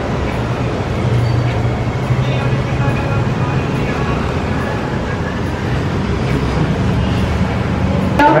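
A steady low hum under a loud, even wash of noise, with voices mixed in.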